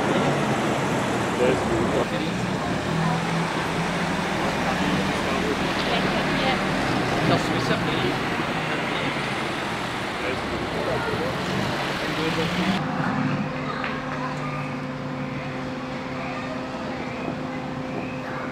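Car engines running at low speed in slow street traffic, mixed with crowd chatter. About 13 s in the sound changes abruptly to a steadier low engine hum with less hiss.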